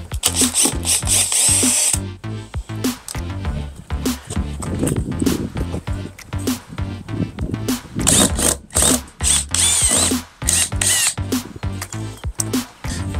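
A power drill backing out screws in two spells, one at the start and a longer one about two-thirds of the way in, its motor whine wavering in pitch, with short clicks between. Background music with a steady beat plays underneath.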